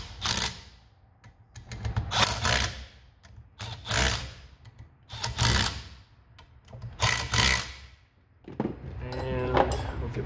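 Cordless drill with a socket extension running the 11 mm cover bolts down on a fuel transfer pump's aluminium cover, in five short runs about a second and a half apart.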